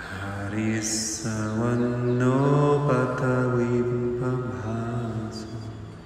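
Deep male voice chanting in long held notes that glide slowly in pitch; a second, longer phrase begins about a second in and dies away near the end.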